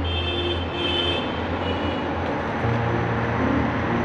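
Background music with held low bass notes that step up in pitch about two-thirds of the way through, under sustained higher tones.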